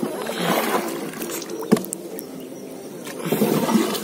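Paddle strokes in river water beside a small wooden boat: two surges of swishing, splashing water, one about half a second in and one near the end, with a single sharp knock in between.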